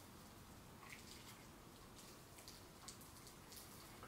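Near silence: room tone with a few faint, soft ticks and rustles from hands rolling a joint in rolling paper.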